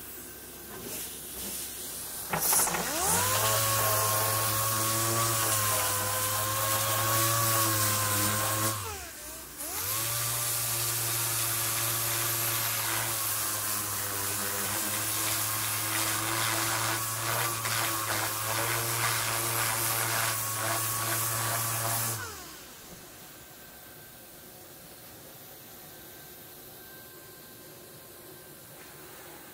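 Hand-held electric orbital sander spinning up and sanding a steel car door panel, with a steady motor whine and the hiss of the pad on the surface. It stops briefly, starts again and runs for about twelve more seconds before being switched off.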